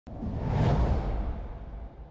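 Cinematic whoosh sound effect with a deep rumble under it. It starts abruptly, swells to its peak within the first second and fades away.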